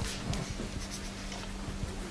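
Faint scratching of handwriting as a circuit diagram is drawn, in short irregular strokes.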